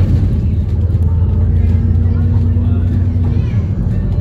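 Bus engine and drivetrain heard from inside the moving bus: a steady low drone, with a faint steady whine joining about a second in and fading shortly before the end.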